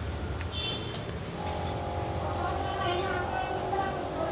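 Indistinct voices talking from about a second and a half in, over a steady low rumble.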